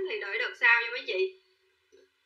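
A woman's voice speaking, stopping about a second and a half in.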